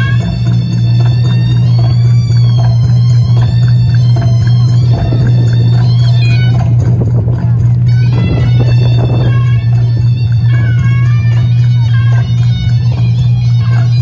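Loud traditional Khasi dance music accompanying the dancers: a high, wavering melody over a steady low drone.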